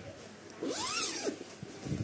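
The long zipper of a fabric fishing-rod bag being pulled open in one long stroke, its pitch rising and then falling as the pull speeds up and slows.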